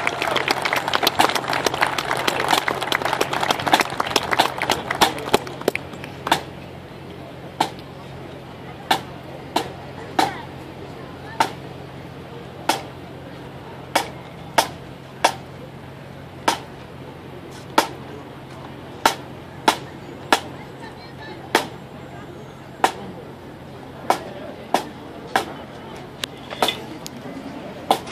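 Crowd applauding for about the first six seconds, then a pipe band's drum beating single sharp strokes at a steady marching pace, roughly one to one and a half a second, as the band marches off.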